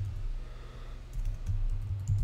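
Computer keyboard being typed on: a run of keystrokes at an uneven pace as a word is typed out.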